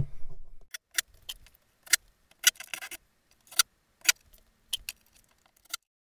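Irregular light clicks and taps, about ten over five seconds, of fabric-wall track and its pins being adjusted by hand on a plywood sample board.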